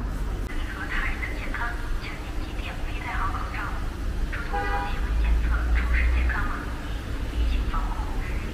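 Busy street ambience: passers-by talking over the steady low rumble of traffic, with the rumble swelling for about a second midway.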